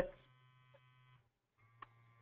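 GX-6000 gas monitor's alarm buzzing faintly during the docking station's alarm check. The buzz runs for about a second, stops briefly, then starts again with a small click.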